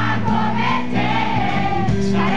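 Live rock band playing a song: male lead vocals over electric guitar, bass and drums, loud and unbroken.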